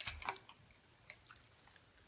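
Faint handling of small plastic toys: a few light clicks and rustles near the start and a couple more about a second in, over low room tone.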